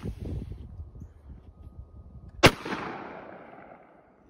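A single unsuppressed shot from a .357 Magnum revolver about two and a half seconds in, followed by a long echo that fades over the next second and a half.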